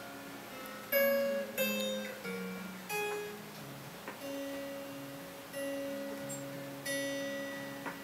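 Acoustic guitar playing a slow instrumental passage: a handful of picked notes and chords, each left to ring out and fade before the next.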